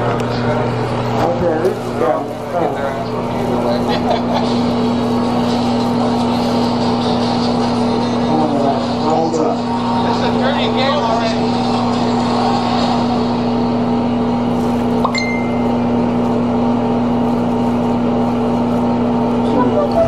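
A steady low hum runs throughout, with quiet, indistinct voices at times.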